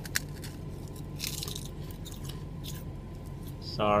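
Prawn crackers being bitten and chewed, a few short, scattered crunches, over a steady low hum.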